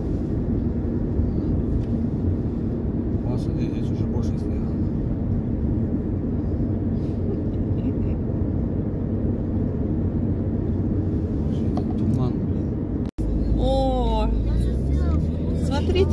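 Steady road and engine drone inside a moving car's cabin. The sound drops out for an instant about thirteen seconds in, and then people talk over the same drone.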